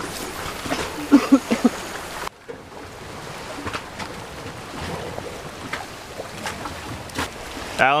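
Outdoor wind and water noise on a body-worn action-camera microphone, with faint distant voices about a second in and a few light clicks. The noise drops abruptly a little over two seconds in, then carries on steadily.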